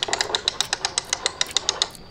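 Rapid, irregular dry clicking, more than ten sharp clicks a second, that stops just at the end.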